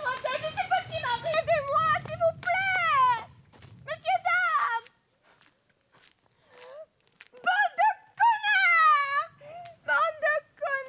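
A woman's high-pitched voice calling out in long cries that fall in pitch, with short pauses between them. A low rumble sits under the first few seconds, then fades.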